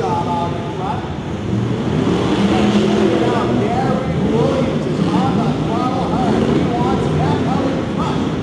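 Engines of several off-road race trucks and buggies running hard on a dirt track, overlapping and rising and falling in pitch as they rev through the course, echoing in an indoor arena hall.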